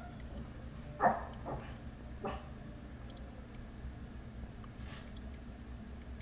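A dog giving a few short yips in the first couple of seconds, over a low steady hum.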